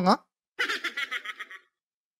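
A man's short, breathy chuckle: a quick run of pulses that fades away over about a second, just after a brief spoken word.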